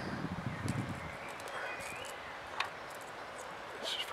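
Close handling noise on the microphone: rustling and fumbling, with a low rumble in the first second and a few sharp clicks scattered through.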